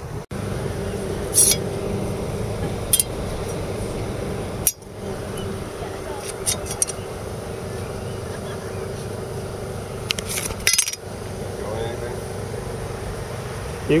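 Several brief, light metallic clinks of knives and tools being handled, over a steady background hum.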